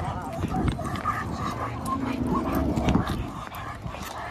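Dogs giving faint whines and yips, over a steady low rumble.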